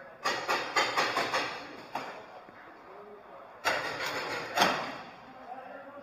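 Paintball markers firing: a run of rapid shots, about four a second, for nearly two seconds, then a second short volley about three and a half seconds in.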